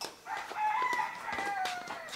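A rooster crowing once: one long call of about a second and a half that holds its pitch and then falls slightly at the end.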